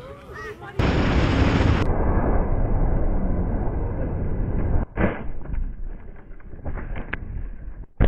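Wind buffeting the microphone of a camera on a moving motorcycle, mixed with engine noise: a loud, dense rush that is strongest in the low end and starts suddenly just under a second in. About five seconds in there is a sharp knock, and after it the noise is quieter.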